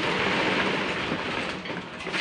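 Steady, rough rattling and grinding of wet concrete being worked by hand, fading slightly toward the end.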